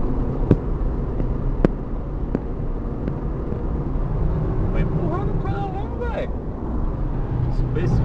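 Steady low road and engine rumble inside a moving car's cabin at highway speed. Three sharp clicks come in the first two and a half seconds, and a short voice sound rises and falls a little past the middle.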